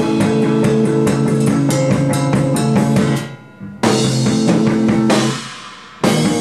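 Electric bass and drum kit playing an instrumental rock passage together, with stop-start breaks: the band cuts off abruptly about three seconds in, crashes back in half a second later, then stops again near the end and lets the sound ring away.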